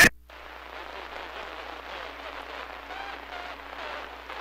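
CB radio receiver hissing with static as a loud transmission cuts off. A weak station's voice comes through faintly and wavers under the noise.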